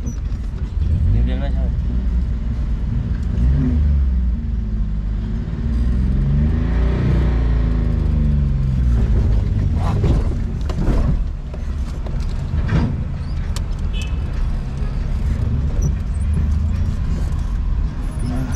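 Car engine heard from inside the cabin as the car pulls away and drives slowly, the engine note rising and then easing off around the middle, with a few sharp knocks or clunks shortly after.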